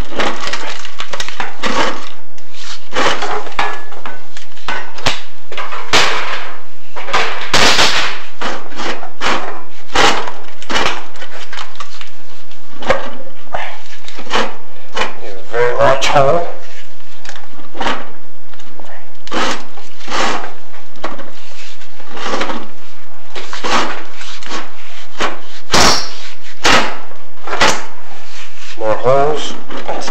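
Irregular knocking and scraping of a chimney inspection camera head rubbing against the flue tile liner as it is lowered down a heating flue.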